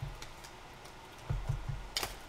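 Quiet handling noise from a cardboard trading-card blaster box being turned over in the hands, with three or four soft, low knocks about a second and a half in.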